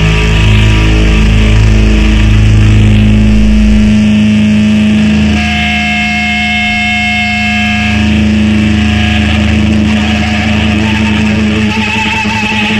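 Distorted electric guitar drone and feedback, held tones ringing on without a beat as a punk song winds down. The deep bass drops out about four seconds in, and a higher-pitched feedback tone comes in a little after midway for a couple of seconds.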